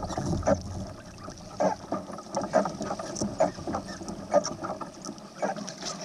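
Irregular splashes and knocks of water against a fishing kayak's hull as a hooked tarpon is held thrashing at its side, with some wind on the microphone.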